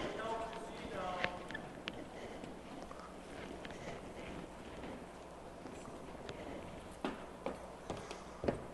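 Faint hall ambience with distant, indistinct voices and scattered light knocks and clicks. A few sharper knocks come near the end.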